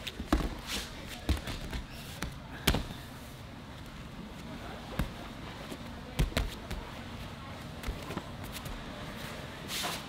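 Two grapplers in gis drilling on foam mats: scattered thuds and slaps of bodies, hands and feet landing on the mat, with rustling and shuffling between them. The loudest impact comes just under three seconds in, with another cluster around six seconds.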